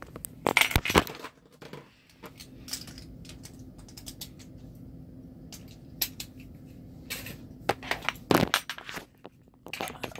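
Small hard plastic and metal pieces being handled: scattered clicks and clatters, loudest about half a second in and again in a cluster near the end, as Beyblade tops are picked up and reset between rounds.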